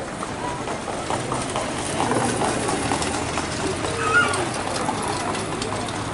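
Spectators talking at a harness racetrack, with faint clatter of trotting horses' hooves mixed in.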